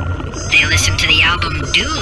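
A person singing in a high, wavering voice without clear words, over a low steady hum.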